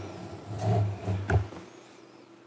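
Low rumbling movement noise on a desk microphone, with a sharp knock about a second and a half in, over a faint steady electrical hum.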